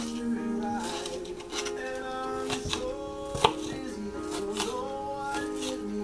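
Knife cutting on a chopping board: a handful of short, irregular knocks, over music playing in the background.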